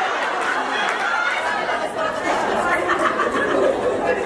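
Audience laughing and chattering over one another in a steady din of many voices: a crowd's reaction to a joke.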